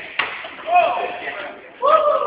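A single sharp knock of a hard impact about a fifth of a second in, followed by voices calling out.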